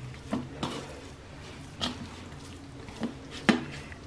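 Hands kneading a soft beetroot dough in a bowl, with a few faint, scattered knocks and taps against the bowl.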